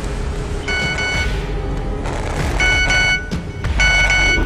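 Mobile phone ringing: three short electronic ring bursts, each a cluster of high steady tones lasting about half a second, over a low ominous music drone.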